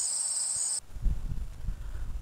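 Insects trilling steadily at a high pitch, which cuts off suddenly about a second in and gives way to a low rumble with irregular thumps.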